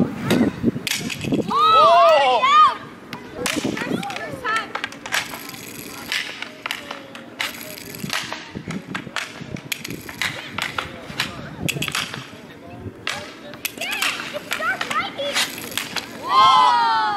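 Inline skate wheels rolling on an outdoor rink surface, with repeated sharp clacks of hockey sticks as the players pass to each other. Loud shouts come about two seconds in, and fainter ones near the end.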